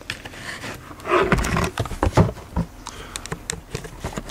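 Handling noise of plastic slot-car track pieces and the camera being moved: a cluster of knocks and rustles starting about a second in, then a quick run of small sharp clicks near the end.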